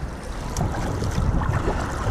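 Water splashing and rushing along the hull of a surfski as it is paddled, with short splashes from the paddle strokes and wind rumbling on the microphone.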